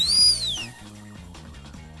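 A whistle-like sound effect that glides quickly up in pitch and back down again in under a second. After it, quiet background music with low sustained notes.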